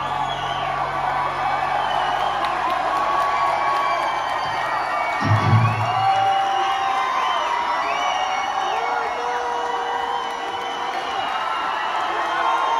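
Live emo rock band with a loud crowd cheering and whooping over it. About five seconds in the low end drops away after a short thump, and a brass horn comes in with long held notes in the second half.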